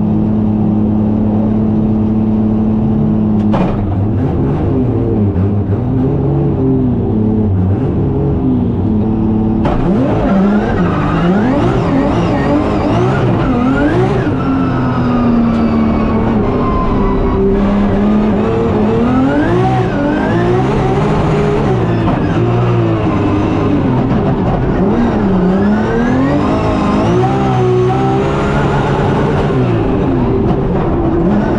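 A 900 bhp BMW M3 drift car's engine heard from inside the cabin. It is held at steady revs on the start line for a few seconds, then the revs waver. From about ten seconds in it runs at full throttle, the revs sweeping up and down repeatedly through gear changes and corners.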